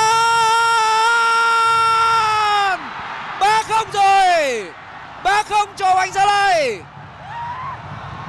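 Football commentator's excited goal shout: one long held high call of nearly three seconds, then two shorter shouted phrases that fall in pitch at their ends.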